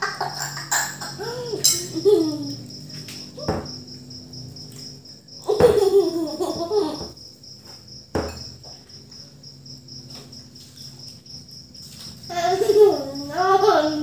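A cricket chirping in a fast, even, unbroken pulse, under bursts of laughter and a child's voice, with two sharp knocks, one about a third of the way in and one past the middle.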